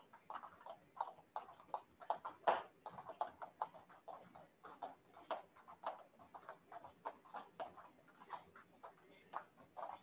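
Jump ropes hitting the foam mats and feet landing as several people skip rope: faint, irregular taps, a few each second, with one louder tap about two and a half seconds in.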